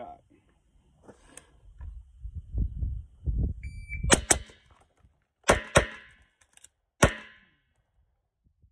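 An electronic shot timer beeps, followed at once by two quick suppressed rifle shots, then two pistol shots a little over a second later, and after a pause of about a second one last pistol shot following a one-round reload. The whole string runs 3.40 seconds. A low rumble comes before the beep.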